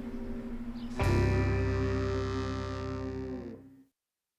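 Music sting: a guitar chord struck about a second in, ringing and fading away just before the end, after a quieter held note.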